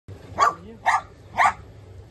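A dog barking three times in quick succession, sharp short barks about half a second apart.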